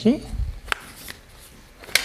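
Footsteps and handling noise on a studio floor: a low thump about half a second in and two sharp clicks, one near the start and one near the end.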